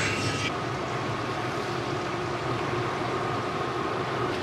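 Tour boat's engine running steadily as the boat cruises along a canal, a low even drone.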